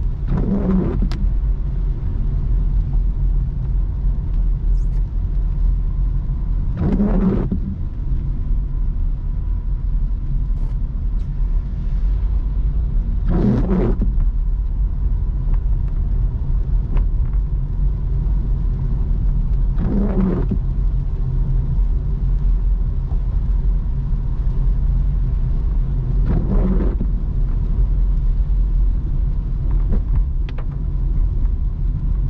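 Car cabin noise while driving in the rain: a steady low rumble of the car on a wet road, with a windshield wiper sweeping across the glass about every six and a half seconds, five sweeps in all.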